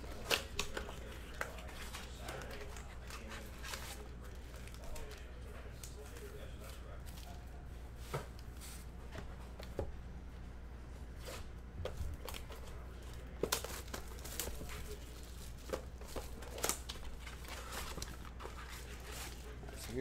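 Cardboard trading-card blaster boxes being torn open, with plastic wrap and foil card packs crinkling as the packs are pulled out and stacked. Scattered short taps and rustles sit over a steady low hum.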